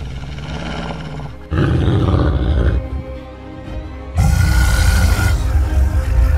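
Dark cinematic intro music with a deep beast's roar sound effect laid over it. The roar comes in two loud surges, the first about a second and a half in and the second about four seconds in.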